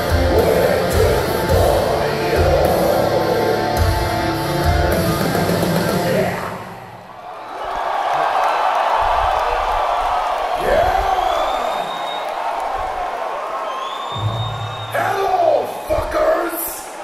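Metalcore band playing live, distorted guitars and heavy drums, stopping about six seconds in. Then an arena crowd cheers and shouts, with a few whistles, and a low held note from the stage comes back near the end.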